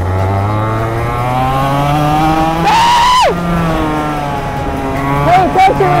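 Racing go-kart engine pulling away under gentle throttle, its pitch climbing steadily for about three seconds, then dropping sharply and running on at a steadier note. Voices join in near the end.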